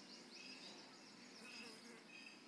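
Near silence, with faint, irregular high-pitched chirps in the background.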